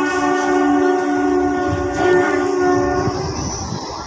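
A long, steady horn blast of two tones sounding together, as loud as the speech around it, which stops about three and a half seconds in.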